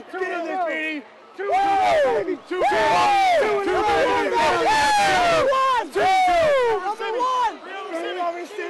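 A group of people shouting and cheering together in celebration, many loud voices overlapping, with a short lull about a second in.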